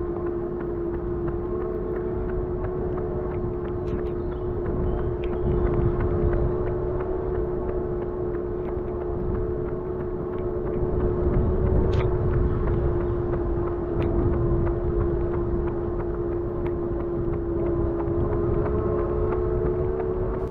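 A small motor's steady, unchanging whine, with wind rumbling on the microphone and a few faint clicks.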